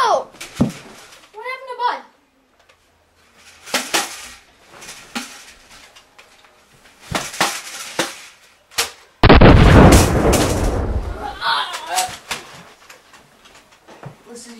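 About nine seconds in, a sudden loud bang like a gunshot goes off, its noise dying away over about two seconds. Before it come a few sharp knocks, and near the start a short wavering voice-like whine.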